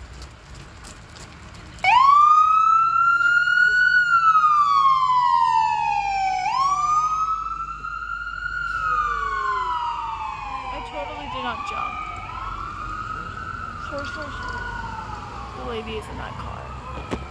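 Emergency vehicle sirens wailing in slow rising-and-falling sweeps. The first one starts suddenly and loud about two seconds in, a second siren joins offset from the first, and together they ease off somewhat. They are responding to a cyclist's crash.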